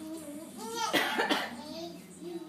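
A short, rough cough-like vocal burst about a second in, over soft pitched vocalising.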